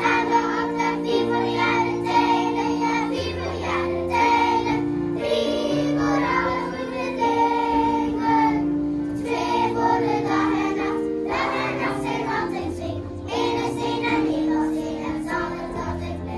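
A children's choir singing a song in unison with keyboard accompaniment, held notes moving along a tune over a steady beat.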